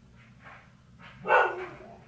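Pet dog barking: a couple of faint barks, then one loud bark about a second and a quarter in.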